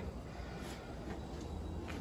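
Faint, steady room tone of a quiet workshop, with no distinct sound standing out.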